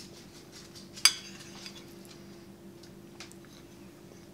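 A metal fork clinks once, sharply and with a brief ring, against a plate about a second in, followed by a few faint ticks of the fork on the plate.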